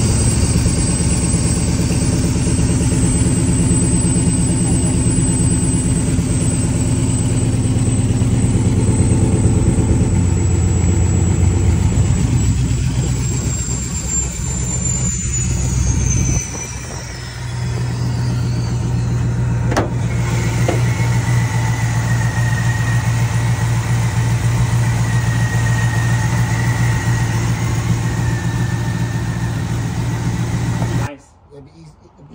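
Supercharged engine of a box-body Chevy Caprice idling steadily, with a thin high whine that slides down in pitch around the middle. A single click comes about two-thirds of the way in, and after it a steady higher tone sits over the idle.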